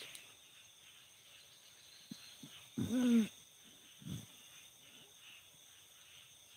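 Steady night chorus of crickets and other insects. About three seconds in, one short low call of about half a second rises and falls in pitch, with a few faint knocks around it.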